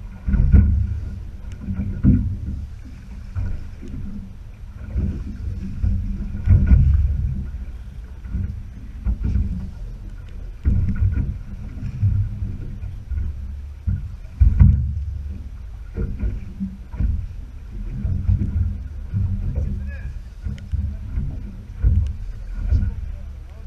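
Low, uneven rumbling and buffeting aboard a small boat drifting on choppy sea: wind on the microphone and water against the hull, surging every second or two.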